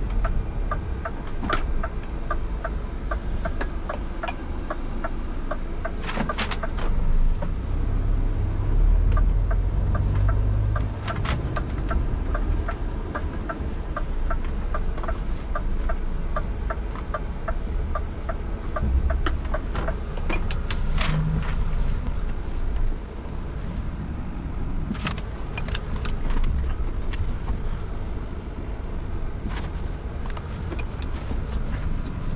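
Inside a Scania truck cab: the engine runs with a low rumble while the turn-signal indicator ticks evenly, about two to three ticks a second, stopping about twenty seconds in. The rumble swells briefly about eight to eleven seconds in, and there are a few sharp knocks from the cab.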